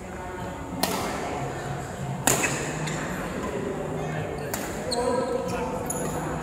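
Badminton rackets striking a shuttlecock in a doubles rally: three sharp hits, roughly one and a half to two seconds apart, each ringing briefly in a large hall, with people talking in the background.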